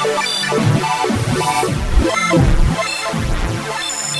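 Waldorf Microwave XTK wavetable synthesizer playing deep bass notes that glide up and down in pitch under short, bright high tones, while its panel knobs are turned.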